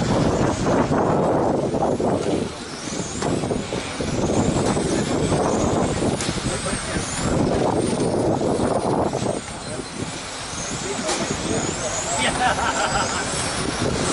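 Electric 1/10-scale RC touring cars racing, their 21.5-turn brushless motors giving high whines that rise in pitch again and again as the cars accelerate out of the corners. This runs over loud rushing noise that swells and fades every few seconds.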